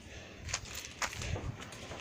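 Faint, irregular soft steps and knocks from someone walking while holding a phone, with low rumbling handling noise.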